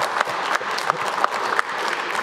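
Conference audience applauding, a steady spell of many hands clapping.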